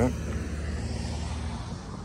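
A low, steady outdoor rumble with a faint hiss above it, easing a little near the end.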